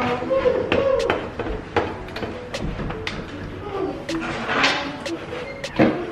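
Hard plastic clicks and knocks from a SodaStream soda maker and its parts being handled, with a louder knock just before the end. A voice talks intermittently in the background.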